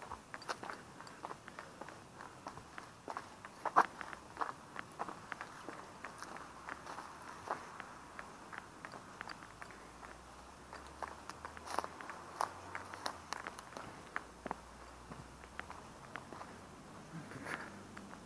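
Footsteps of a person walking over broken brick, concrete rubble and dry grass: an irregular run of light crunching steps, with a few louder ones.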